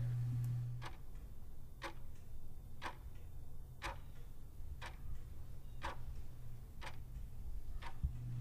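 A clock ticking faintly and evenly, about once a second. A low steady hum cuts off about a second in.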